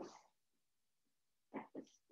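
Near silence: room tone in a pause between spoken words, with a couple of faint short sounds just before the end.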